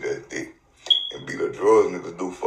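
A man's voice making a few short vocal sounds, then a longer drawn-out one that bends in pitch in the second half.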